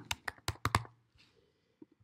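Typing on a computer keyboard: a quick run of about six keystrokes in the first second.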